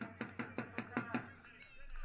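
A rapid run of seven sharp strikes, about five a second, stopping a little past a second in.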